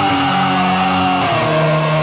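Rock band music: sustained electric guitar chords under one long held sung note that sags slightly in pitch, with the chord changing about one and a half seconds in and no drum hits.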